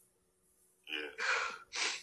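A person gasping in a voice-note recording: three short breathy gasps in quick succession, starting about a second in.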